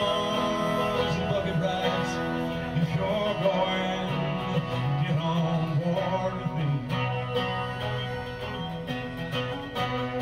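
Country-style live band music: acoustic guitar strumming with a melody line above it.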